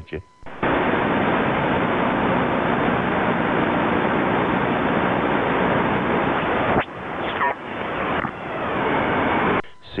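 Radio receiver static: a steady, loud hiss of band noise from the transceiver's speaker with no station on the frequency. It briefly drops out about seven seconds in, with a short whistling tone, then resumes.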